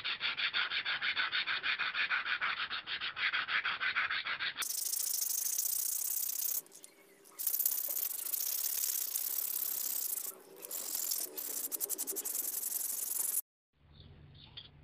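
Hand cleaning of rusty steel cutter blades: a fast, rattling scrape of about ten strokes a second for the first four and a half seconds, then a steadier hissing rub with two short breaks. It cuts off abruptly near the end.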